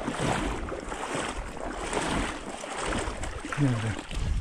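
Water sloshing and splashing in soft pulses about once a second, as someone wades through shallow marsh water.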